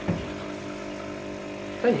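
A steady mechanical hum made of several even tones, like a small appliance motor running, with a short voice sound just after the start and a word spoken near the end.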